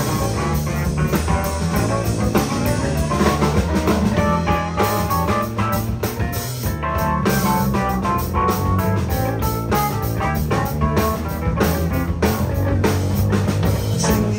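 Live blues band playing an instrumental passage: electric guitar over bass guitar and a drum kit, with steady drum strikes.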